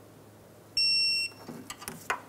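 A single short electronic beep, about half a second long, from a digital torque wrench signalling that the bolt has reached its set torque, followed by a few faint clicks near the end.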